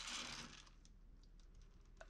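Faint handling sounds of hands working a clay horse sculpture: a soft rustle at the start, then a few light clicks.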